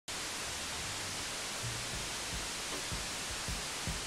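Steady television static hiss. A few soft low thumps come in during the second half.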